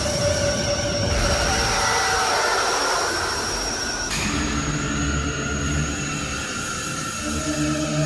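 Hardcore industrial music in a beatless, droning passage: dense noise with held high tones. About halfway through the layers change, and new held tones with a pulsing low bass come in.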